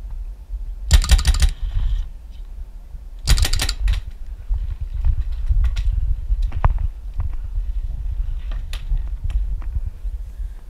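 Paintball marker firing close by in two quick strings of rapid shots, about a second in and again around three and a half seconds, followed by scattered single pops.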